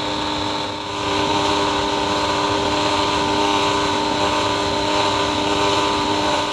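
Bosch kitchen machine's motor running steadily with the kneading hook fitted, kneading flour into a quark dough. It gives a steady hum and whine with a brief dip about a second in.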